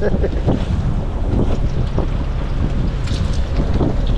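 Wind buffeting the microphone over a steady low rumble aboard a fishing boat in rough open sea, with waves washing against the hull.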